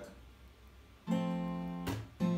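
Acoustic guitar: a chord plucked on the top three strings about a second in and left ringing, then cut off near the end by a percussive chuck, a slap of the strumming hand that mutes the strings.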